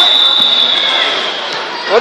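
A single high, steady whistle held for just over a second, sinking slightly in pitch at the end, over the hum of voices in the gym.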